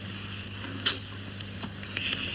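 Steady hiss with a low hum, the noise floor of an old television recording, with a sharp click a little under a second in and a fainter one past one and a half seconds.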